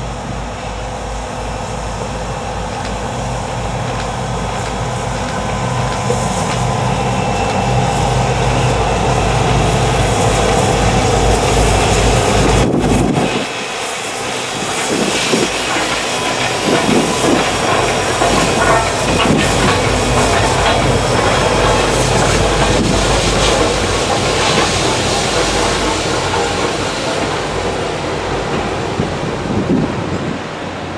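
A diesel-led passenger train passing close, with Reading & Northern T1 #2102, a 4-8-4 steam locomotive, working behind the diesel. The sound grows louder as the locomotives approach and go by. The passenger coaches then roll past with wheels running over the rails.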